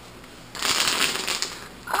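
Plastic bubble wrap being bunched up and twisted in the hands, a dense crinkling and crackling that starts about half a second in and lasts just over a second.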